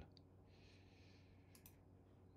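Near silence: room tone with a brief faint hiss about half a second in and two faint clicks of computer input about a second and a half in, as a screenshot tool is opened.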